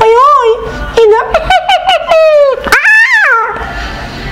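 A human voice imitating a whining dog: a string of short, high whines that bend up and down in pitch, the longest one near the end, about three seconds in.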